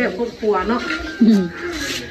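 Voices of people talking over a shared meal, short bits of speech with one falling-pitched exclamation past the middle.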